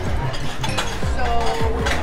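Background music with held notes over a low bass, and light clinks of a knife and fork on a plate beneath it.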